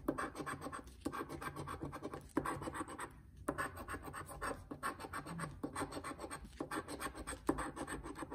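A coin scratching the coating off a scratch-off lottery ticket: quick rasping strokes in runs, with short pauses every second or so as it moves from spot to spot.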